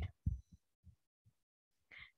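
A pause in speech with a few faint, short low thuds spaced unevenly in the first second or so. The tail of one spoken word comes at the start and the hiss of the next at the end.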